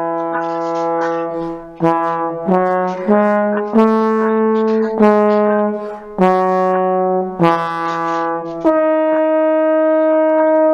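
Trombone playing a tune of separate notes, the slide changing pitch every half second or so, ending on one long held note near the end.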